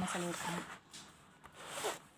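Paper sheets rustling and sliding as they are handled and moved, with a louder swish that builds near the end and stops sharply.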